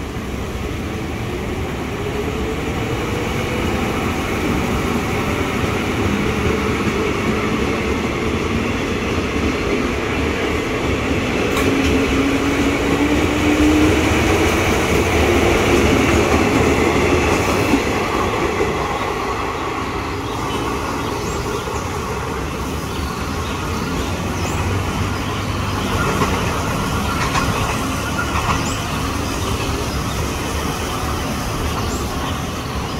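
JR 205 series electric commuter train moving along the platform, its traction motors whining with a pitch that rises as it gathers speed. The running noise is loudest about halfway through, then eases off.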